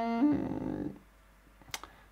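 A man's sustained closed-mouth thinking hum ('mmm'), held on one pitch, lifting slightly and trailing off within the first second, followed by a couple of faint clicks near the end.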